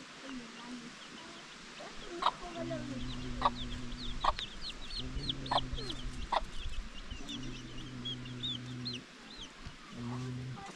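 A hen clucking, with rapid high chirps through the middle seconds. Three low, held sounds of a second or more come and go alongside.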